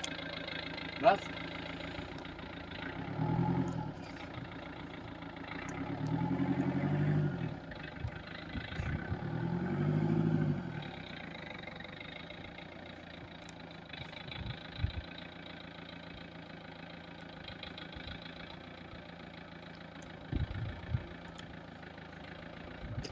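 An engine idles steadily and is revved up and back down three times in the first half, each rev lasting a second or two.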